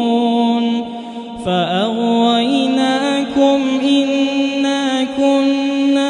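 A man's voice reciting the Quran in melodic chant, holding long, drawn-out notes. It breaks off briefly for breath about a second in, and the next phrase begins with a sliding ornament.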